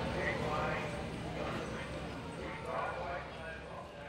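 Indistinct voices and general crowd bustle, with some clattering, fading out toward the end.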